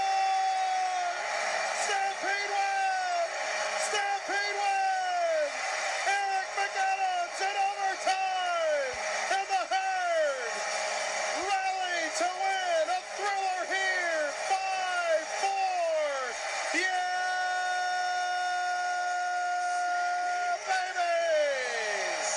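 Arena goal horn sounding for a home goal: a long blast, then a rapid string of short blasts, each dropping in pitch as it is cut off, then another long steady blast that winds down near the end.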